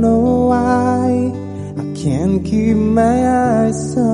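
A man singing long held notes over strummed acoustic guitar, with a falling-then-rising slide about halfway through. His voice comes through a Boya M1 headset microphone and a V8 live sound card.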